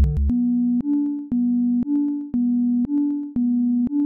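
Experimental electronic music: the beat and bass drop out about a third of a second in. What remains is a synthesizer playing plain sine-like tones that alternate between two close low pitches, about two notes a second, held notes alternating with fading ones.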